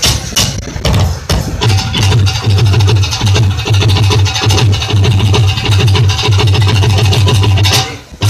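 Punjabi folk instrument ensemble playing loudly, carried by a fast, steady, heavy drum beat with other percussion and instruments over it.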